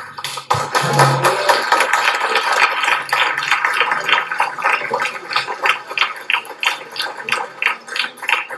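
Chilean folk ensemble playing strummed guitars and accordion in a lively piece, with sharp rhythmic accents about three times a second. The music starts abruptly just before this moment and carries on loudly throughout.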